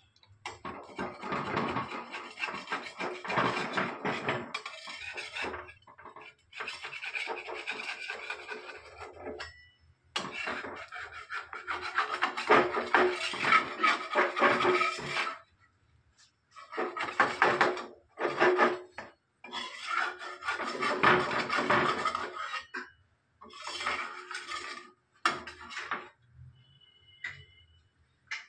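A spatula scraping around and under a dosa on an unoiled earthenware tawa, prising it loose from the clay surface, in six bursts of rasping strokes with short pauses between them.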